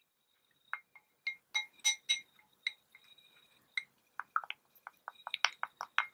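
Thin wooden stick clinking against the sides of a small glass bowl as an oily mixture is stirred by hand, each tap leaving a brief glassy ring. The taps come irregularly at first, then quicken to about five a second near the end.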